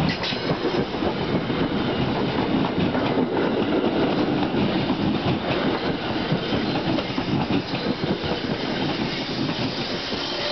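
NJ Transit Comet V commuter coaches rolling past close by as the train pulls out of the station, a steady, loud rail rumble with a few sharp wheel clicks near the start.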